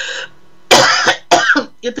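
A woman clears her throat with two short, sharp coughs, about two-thirds of a second and a second and a third in.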